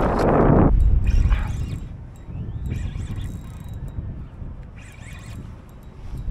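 Spinning reel giving a loud, rapid run of clicks as a hooked fish is fought, dying away within the first second, followed by wind on the microphone.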